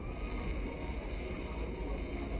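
Busy night-market street ambience: a steady low rumble with faint music and indistinct voices in the background.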